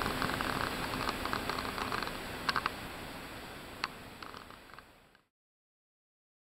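Office room noise with a few light clicks and ticks, fading steadily until it cuts to silence about five seconds in.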